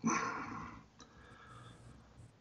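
A short, breathy vocal sound that fades out within the first second, then only faint room sound.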